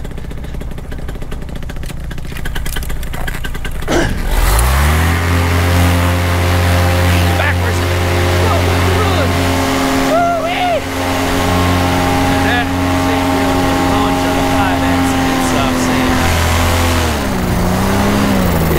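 Paramotor engine and propeller running low, then throttled up sharply about four seconds in to full power for the takeoff run and climb-out. It holds a steady high drone, dips briefly near the end and comes back up.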